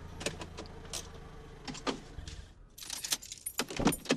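Faint low hum of a car with scattered light clicks, then a quick run of small jingling clicks in the last second.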